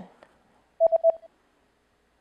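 Short electronic beep sound effect: three quick pulses on one steady tone, lasting about half a second, about a second in. It is a quiz prompt that cues the viewer to answer.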